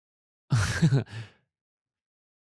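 A man's short wordless vocal reaction about half a second in, lasting under a second in two parts, the second quieter. The rest is dead silence.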